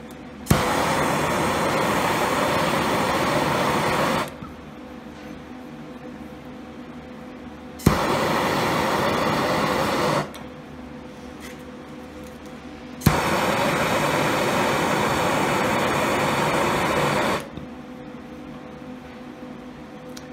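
Handheld gas torch lit three times: each time a sharp igniter click, then the steady hiss of the flame for two to four seconds before it is shut off.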